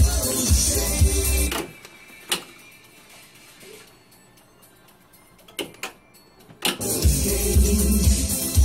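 Music played back on a Soyuz MPK-111 C-1 reel-to-reel tape deck cuts off about a second and a half in. A quiet gap follows with a few sharp mechanical clicks from the deck's front-panel controls being pressed, and the music comes back near the end.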